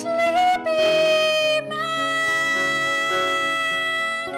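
A woman singing a ballad: a brief note, then one long held note over soft piano and guitar accompaniment.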